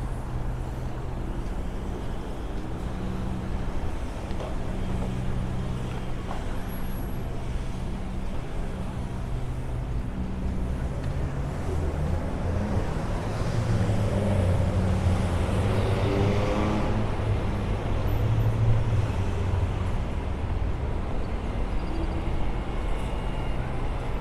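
City street traffic: a steady low hum of running engines, with a large vehicle's engine growing louder and rising in pitch in the middle, the loudest part, then easing off.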